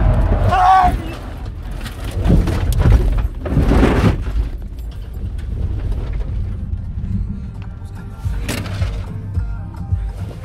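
Car-cabin road and engine rumble while the car is jostled, with a raised voice in the first second and several loud knocks and rattles around two to four seconds in and once more near the end. Music plays underneath.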